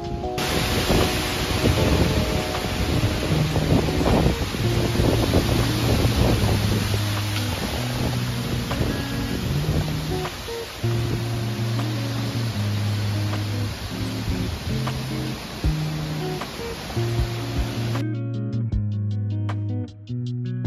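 Strong storm wind rushing through trees and buffeting the microphone, over background music with a slow bass line. The wind noise cuts off suddenly near the end, leaving only the music with plucked guitar.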